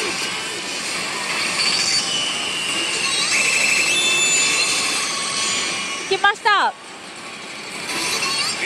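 FAIRY TAIL pachislot machine playing its electronic sound effects over the constant din of a pachislot hall. A quick run of falling pitched effects about six seconds in is the loudest sound, and the level dips after it.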